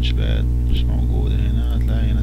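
Steady electrical mains hum, made of a stack of low constant tones, with faint voices audible over it.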